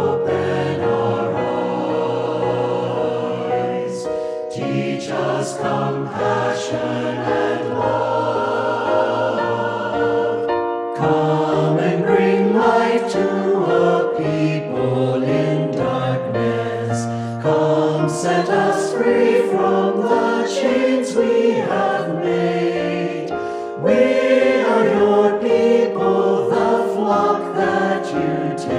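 A choir singing a slow hymn, its sustained vocal lines moving phrase by phrase, with a fresh phrase starting about eleven seconds in and again near the end.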